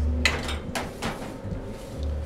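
A few short clatters in the first second of utensils and dishes being handled on a kitchen counter, over background music with a steady bass.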